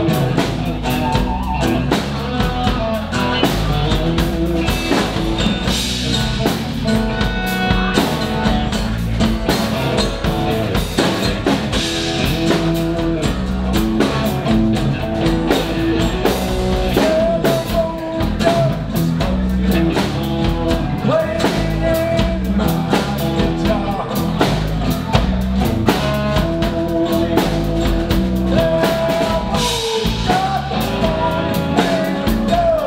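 Live rock band playing a song: drum kit, electric bass, acoustic-electric guitar and electric guitar, with a steady beat and sustained guitar lines.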